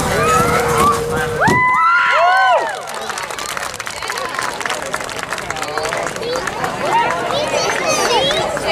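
Spectators' voices: a long held call that jumps higher in pitch about a second and a half in and arches over, then crowd chatter.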